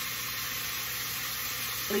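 Bacon and onions sizzling steadily in a frying pan.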